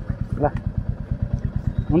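Royal Enfield Bullet's single-cylinder four-stroke engine idling at a standstill, a steady, even beat of low pulses. A short voice sound about half a second in.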